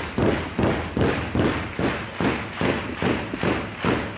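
A crowd clapping in steady unison, about three claps a second.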